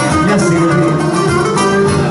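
Live Cretan folk music: laouta strumming a driving accompaniment under a lead line, a pentozali dance tune with Cretan lyra.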